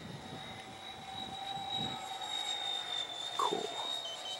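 Electric ducted-fan motor of an LX MiG-29 radio-controlled model jet flying a fast pass, giving a steady high-pitched whine over wind rumble.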